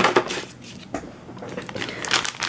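Hands handling a camera module's packaging: a short rustling clatter at the start, a light tap about a second in, and the crinkle of a plastic anti-static bag starting near the end.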